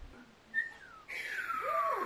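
A person whistling: a short high note about half a second in, then a long note that slides steadily down in pitch over about a second, with breathy hiss around it.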